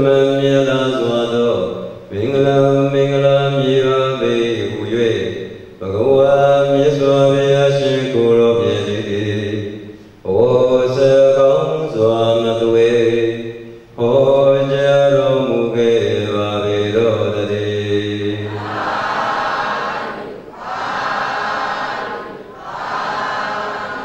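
A Buddhist monk chanting solo in long, drawn-out melodic phrases of a few seconds each, with short breaths between. Near the end a group of voices takes over with a rougher, less pitched sound.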